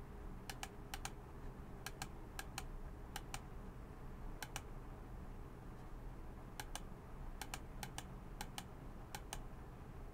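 Faint, irregular clicking at a computer, about eleven quick press-and-release click pairs spread across the stretch, over a low steady room hum.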